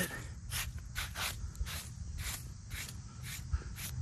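A hand brushing and wiping grit and dry grass off the face of a flat stone gravestone, in short rubbing strokes about two a second.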